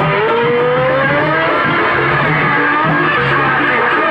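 Live jaranan accompaniment: a melody line slides upward in pitch over the first second and a half, over a steady low percussion pulse.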